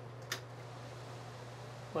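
Ceiling vent fan being switched on: a short click about a third of a second in, over a faint steady low hum.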